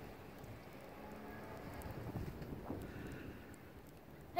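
Faint wind noise on a phone microphone outdoors in snow, with a few soft crunches about two seconds in, typical of footsteps in fresh snow.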